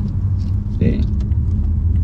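Steady low rumble of a BMW M5 cruising in comfort mode, engine and road noise heard from inside the cabin. A brief vocal sound comes just under a second in.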